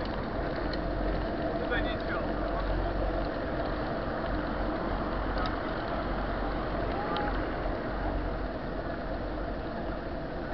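Wind buffeting the microphone of a handlebar-mounted camera on a moving bicycle, with a steady rumble of road noise and faint voices of nearby riders.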